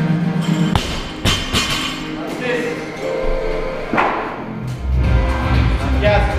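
Loaded barbell dropped from the shoulders onto a rubber lifting platform, a thud about a second in followed by a couple of quick bounces, over gym music with a steady beat.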